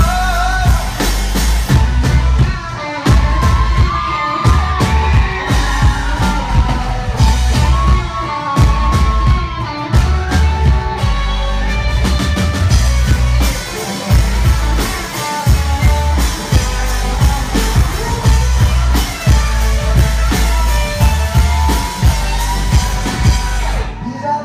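A rock band playing live through a club PA: drums, guitars and a heavy low end, with singing over the top.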